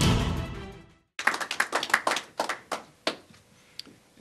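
Intro theme music fades out over the first second. A short burst of scattered hand claps from a few people follows and stops about three seconds in, with one faint click near the end.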